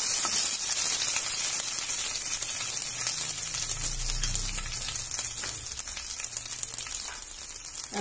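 Mustard seeds, green chillies and curry leaves sizzling and crackling in hot oil in a kadhai, the steady sizzle slowly dying down.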